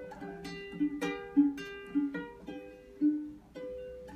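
Solo ukulele strummed, a series of chords each struck and left to ring, as an introduction before the singing comes in.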